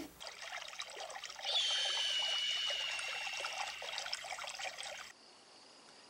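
Edited sound effect of trickling, pouring liquid. A thin high tone joins it about a second and a half in, and it cuts off suddenly about five seconds in.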